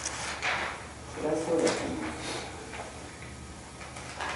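Meeting-room lull: a brief murmured voice, with a few soft rustles and scrapes of people shifting at the table.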